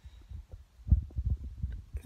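Irregular low thumps and rumbles of handling noise as a handheld camera is moved, the strongest about a second in.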